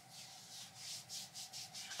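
Faint, soft rubbing strokes, several in a row: hands handling and turning a small plastic spray bottle.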